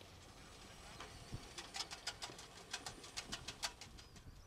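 Birds calling in the open: a quick run of short, sharp chirps starting about a second in, faint over quiet field ambience.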